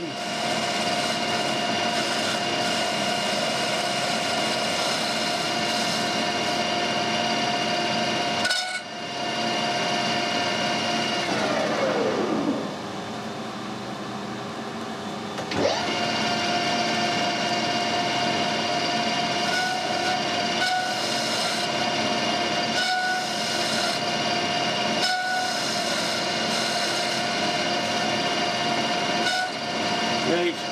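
Metal lathe running with a steady multi-tone gear whine. About a third of the way in it is switched off and winds down, falling in pitch, to a lower background noise. A few seconds later it starts back up at once and runs steady again.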